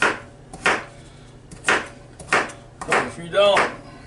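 Kitchen knife dicing carrots on a thin flexible plastic cutting board: five sharp chops, about half a second to a second apart.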